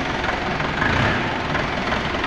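Steady mechanical din of factory machinery running, a continuous dense noise with no distinct events.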